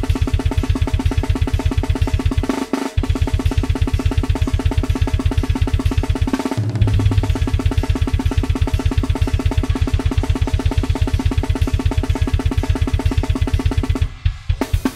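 Programmed drum kit built from Superior Drummer samples playing a grindcore blast beat at 250 bpm: rapid, even kick and snare strokes, loud throughout. The pattern breaks briefly twice, about three seconds in and again about six and a half seconds in.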